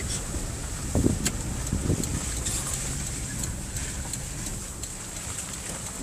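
Steady engine and road rumble inside the cab of a moving four-wheel-drive, with wind noise and a couple of light clicks or rattles, one about a second in.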